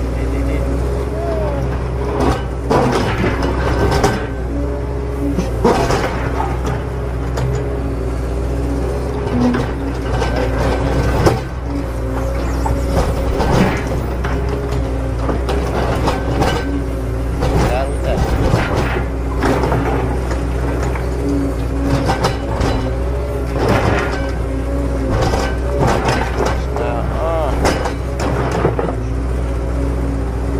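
Plastic toy loader and excavator scraping and clicking through sand, with short scrapes and clacks throughout, over a steady low hum, steady tones and indistinct voices.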